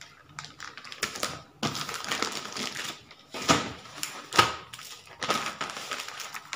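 Plastic poly mailer bags rustling and crinkling as they are folded and handled, with irregular crackles and two sharper snaps about three and a half and four and a half seconds in.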